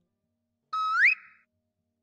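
A single short electronic sound effect: a held beep-like tone that slides sharply upward in pitch, ending in a brief hiss, lasting well under a second.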